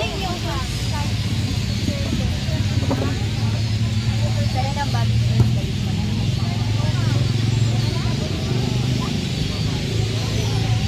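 Shoppers' voices chattering close by in a crowded market stall, over a steady low hum.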